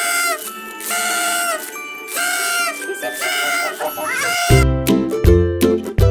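Toy party horn blown in several short, buzzy blasts, each under a second long. About four and a half seconds in, upbeat plucked-string music with a bass line takes over.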